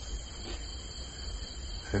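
Steady, high-pitched chorus of night insects, such as crickets, with a low steady hum underneath.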